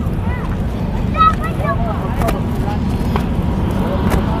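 Steady low rumble of wind on the microphone, with snatches of people's voices talking nearby in the first half and a couple of faint clicks.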